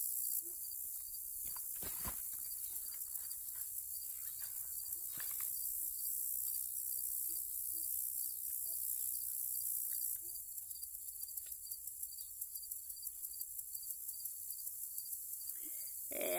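A high, steady chorus of field insects, pulsing rapidly and growing louder about ten seconds in, with soft rustles and a low knock near the start as a book and papers are handled.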